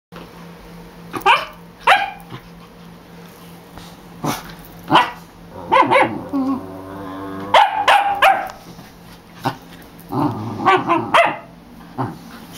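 Welsh corgi puppy play-barking while being teased with a toy: about ten sharp barks in uneven pairs and singles, with a longer growl in the middle.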